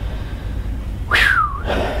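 A man lets out one short, breathy, whistled "whew" about a second in, falling in pitch, the sound of relief after a lot of work.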